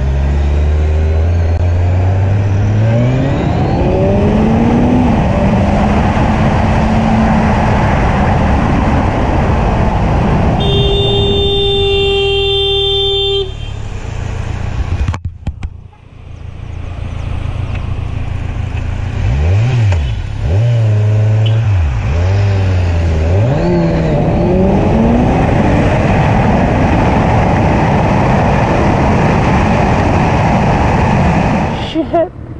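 Sport motorcycle engine accelerating up through the gears under heavy wind noise. A vehicle horn blares on one steady note for about three seconds near the middle. Later the engine revs up and down several times in quick succession before pulling steadily again.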